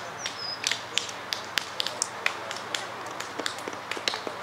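Irregular sharp clicks and taps, several a second, over a faint steady hum, with a short high whistled note shortly after the start.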